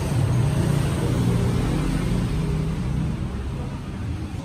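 Steady low rumble of nearby road traffic, with a hiss over it.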